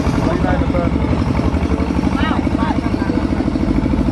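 Tractor engine running steadily under load, with a fast, even chugging pulse, heard from the passenger cart it is pulling. Short bits of voices come over it twice.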